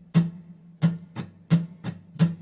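Acoustic guitar strummed at a steady, even tempo in alternating down and up strokes: three louder down strums with lighter up strums between them, the chord ringing under each stroke.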